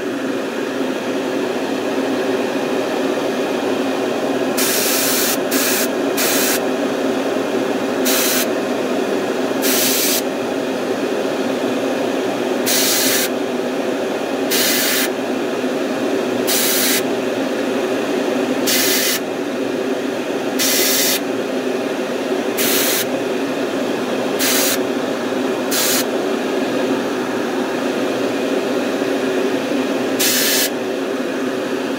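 Airbrush spraying paint in about a dozen short trigger bursts of hiss, each under a second, coming roughly every two seconds from about five seconds in. A steady hum runs underneath.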